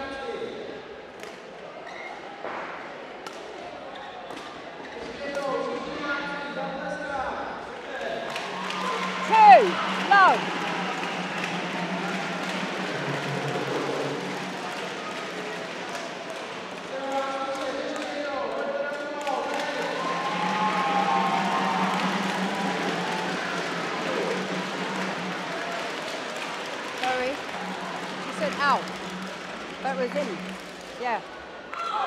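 Badminton play in a sports hall: sharp squeaks of court shoes on the floor, loudest twice about nine to ten seconds in and again near the end, with knocks of racket on shuttlecock, over a murmur of voices in the hall.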